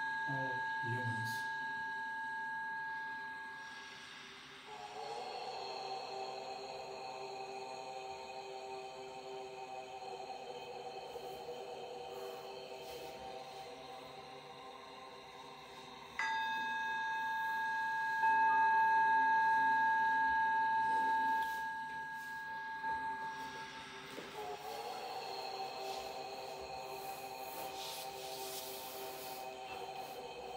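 Calm background meditation music of long sustained tones: a ringing bell-like tone struck about sixteen seconds in and slowly fading, alternating with a lower, softer droning chord.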